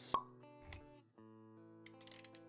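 Quiet intro jingle with held synth-like notes, punctuated by a sharp pop just after the start and a soft low thud about three-quarters of a second in. These are the sound effects of an animated logo reveal.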